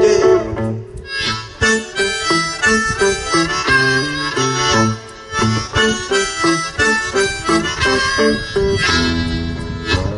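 Blues harmonica played into a vocal microphone in short repeated notes and phrases, over an electric guitar accompaniment, in an instrumental break with no singing.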